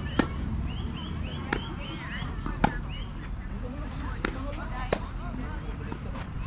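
Tennis ball struck by racquets in a doubles rally: a serve just after the start, then four more sharp pops about a second apart, the one near the middle the loudest. A fast repeated high chirping runs in the background through the first half.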